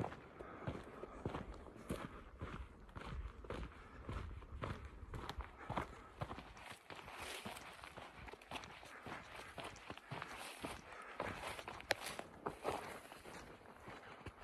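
A hiker's footsteps on a dirt trail: a faint, steady run of steps, with one sharper knock near the end.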